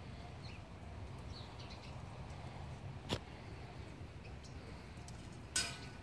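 Low, steady outdoor background with a few faint, high bird chirps. There is a single sharp click about three seconds in and a louder, short clack with a brief ring near the end.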